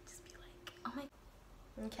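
Quiet room with faint whispering and a short murmured sound just before a second in. A woman's voice starts speaking near the end.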